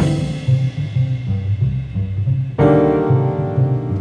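Bossa nova quartet playing: a walking upright double bass line under piano chords, one struck at the start and another about two and a half seconds in, each left to fade.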